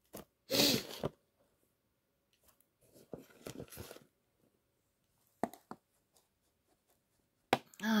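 Loose substrate poured into a clear plastic enclosure in one short rushing burst. Fainter rustling follows as it settles, then a few light plastic clicks.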